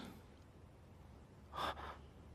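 Near-silent room tone, then about one and a half seconds in a single short intake of breath.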